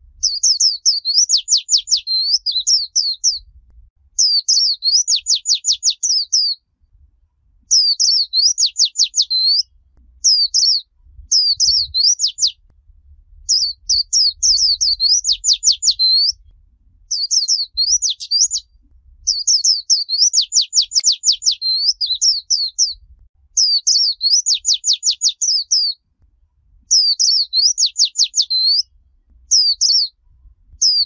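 White-eye singing in the 'líu choè' style: high, rapid warbling phrases of quick sweeping notes, each a second or two long, repeated with short pauses between them.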